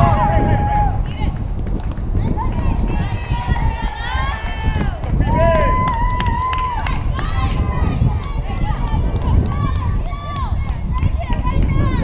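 High voices shouting and calling out across a softball field, some yells drawn out and held, over a steady low wind rumble on the microphone.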